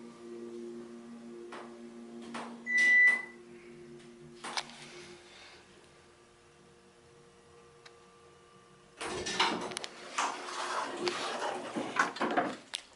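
Otis hydraulic elevator car travelling down one floor with a steady low hum, a short high-pitched beep about three seconds in and a click a moment later. Near the end the doors slide open with loud rustling and knocking.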